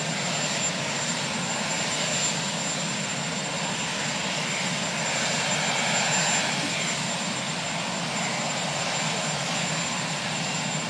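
Marine One, a Sikorsky VH-3D Sea King helicopter, running on the ground: a steady rushing engine noise with a thin, high, unchanging whine.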